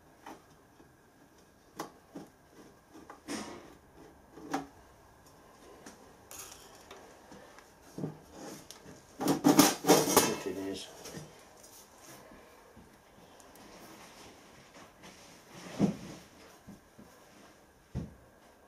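Hands working the parts of an antique brass pressure gauge: scattered light clicks and knocks as the dial face is freed from its brass case, a burst of rapid metallic rattling about halfway through (the loudest), and a single knock near the end.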